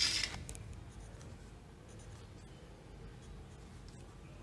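Pencil drawing a line along a ruler on paper: one short scratchy stroke right at the start, then only faint scratching and rubbing.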